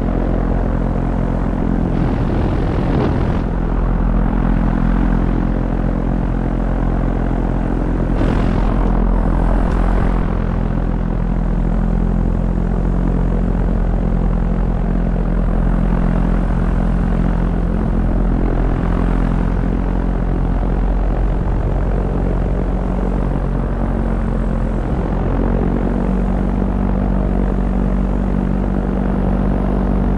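Small propeller aircraft's piston engine droning steadily in flight, heard on board over the rush of wind. Brief swells of wind noise come about two and eight seconds in.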